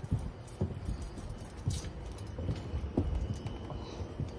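Footsteps on a painted wooden porch floor and steps: irregular low thuds, about two a second.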